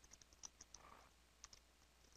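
Faint computer keyboard typing: an irregular run of quick, light key clicks, several a second, with a short pause in the middle.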